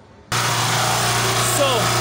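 A 2.5 kW portable generator running steadily on LPG through a gas conversion kit, with a strong, even low hum. It is under a light load of about 820 W, roughly a third of its rating. The sound cuts in abruptly just after the start.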